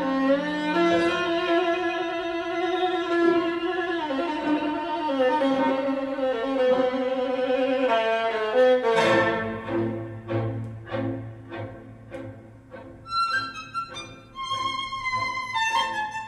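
Violin music played back through a pair of tall floor-standing hi-fi loudspeakers: long bowed notes with vibrato, then, about nine seconds in, shorter separate notes that die away over a held low note.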